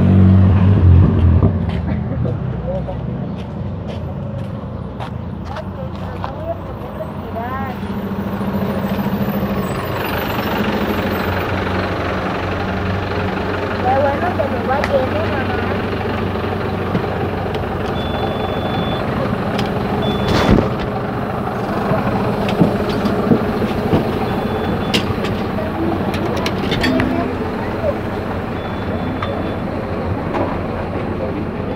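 City bus running, its engine loudest in the first couple of seconds as it comes up, then a steady drone heard from inside the moving bus. Short high beeps come several times in the second half, and there is a sharp knock about twenty seconds in.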